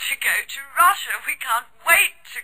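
A person's voice speaking.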